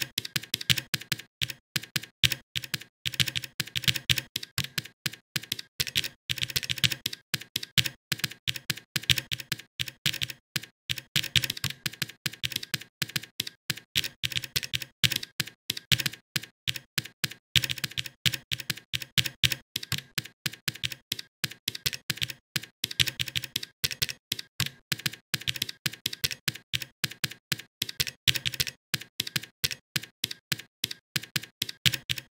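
Typing on a computer keyboard: rapid, uneven keystrokes with a few short pauses, as code is entered.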